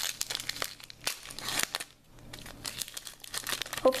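A foil Pokémon booster pack wrapper crinkling sharply as it is handled and torn open, in two spells with a brief pause about halfway through.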